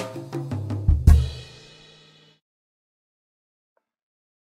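Drum-backed music of a children's English chant track ending on a loud final hit about a second in, which rings out and fades away by about halfway through, leaving silence.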